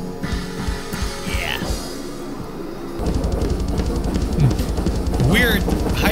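Live metal band playing: drums with distorted guitars. Sparse drum and cymbal hits for the first few seconds, then, from about three seconds in, a fast, steady run of triggered double-bass kick drums under the guitars.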